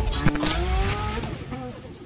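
A car engine revving, its pitch rising over the first second, then dying away.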